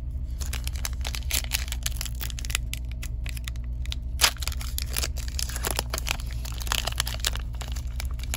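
Foil trading-card pack wrapper crinkling and tearing as it is opened by hand: a dense run of crackles, with one sharp crack about four seconds in, over a low steady hum.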